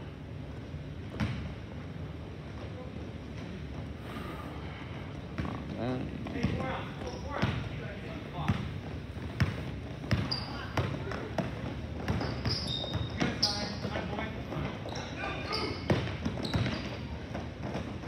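A basketball being dribbled on a hardwood gym floor, irregular bounces over a background of players' and spectators' voices in the gym.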